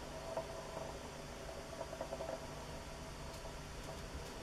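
Quiet room tone: a faint steady hum with a few soft clicks, about half a second in and again around two seconds in.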